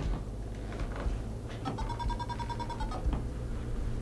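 Electronic alarm of a ghost-hunting proximity sensor: a rapid run of beeps at one steady pitch, lasting about a second, starting a little under two seconds in. The alarm is set off by something coming close to the sensor, which the investigators put down to a sweater.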